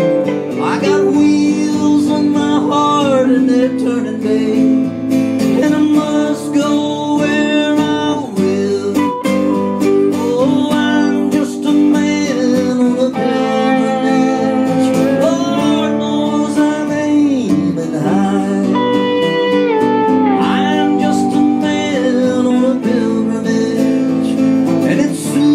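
Live acoustic country band in an instrumental break: acoustic guitar strumming steady chords under a lead melody with held and bending notes.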